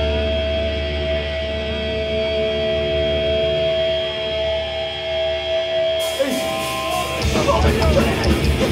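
Live thrash metal band: amplified electric guitars hold steady ringing tones over a low drone, then about six seconds in the full band comes in with the next song, drums and distorted guitars driving hard by about seven seconds.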